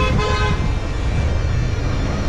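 A vehicle horn toots twice in quick succession at the start: the first very short, the second about half a second long. Under it runs a steady low rumble of traffic.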